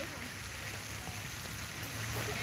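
Steady outdoor background noise: a soft even hiss over a low rumble of wind on the microphone.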